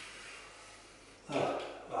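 Faint scraping of a utility-knife blade scoring vinyl floor covering as it is cut into strips.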